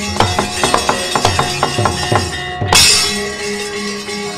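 Javanese gamelan playing, with a fast run of sharp knocks and metallic clatter from the dalang's cempala and keprak (metal plates on the puppet chest) and low drum strokes as a puppet is moved. A louder crash comes about two and a half seconds in.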